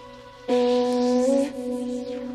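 A sustained synthesized voice note starts sharply about half a second in and steps up in pitch partway through. It plays through Ableton's Erosion effect in Wide Noise mode, its frequency swept upward, so a hiss of added noise sweeps over the note.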